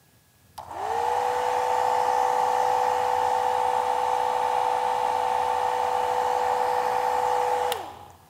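Old-fashioned handheld hair dryer switched on, its motor tone rising briefly as it spins up, then running steadily with a rush of air. Near the end it is switched off and the tone drops away.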